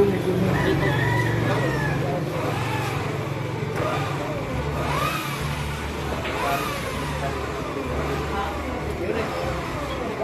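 Background chatter over a low, steady engine hum, with a rooster crowing a couple of times about halfway through.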